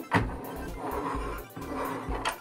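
Quiet background music, with a couple of light knocks from a plastic toy jet being handled, the first just after the start and the second about a second in.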